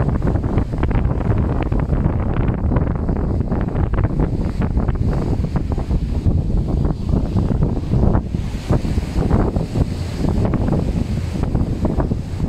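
Wind buffeting a phone's microphone: a loud, steady low rush with constant crackling gusts.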